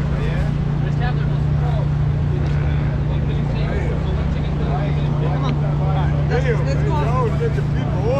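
A parked van's motor running with a steady low hum, with faint voices over it.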